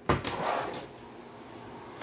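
A deck of tarot cards being cut and handled on a table: a sharp tap at the start, then a short rustling slide of the cards lasting under a second, followed by faint light ticks.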